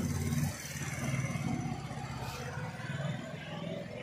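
A steady, low-pitched engine hum, a little louder in the first half second.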